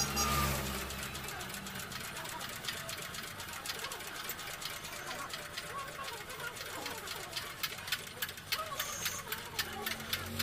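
Rapid, irregular light metallic clicking and tapping from hand work with tools on a small diesel engine, with faint voices in the background. Background music fades out in the first second or so.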